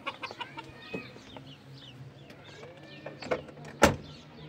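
Chickens calling, many short falling chirps and clucks, with scattered knocks and a low steady hum. A single sharp knock near the end is the loudest sound.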